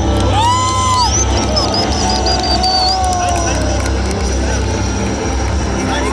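Military helicopters flying low overhead, a steady low rotor and engine drone. A rising, held shout or whistle comes about half a second in, followed by a run of short high chirps.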